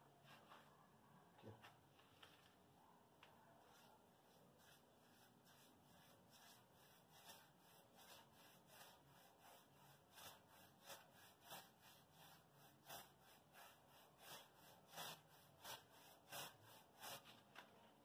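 Very faint scrubbing of a wide paintbrush dabbing tint onto a rough textured mortar wall, in short strokes that settle into a steady rhythm of about two a second from about six seconds in.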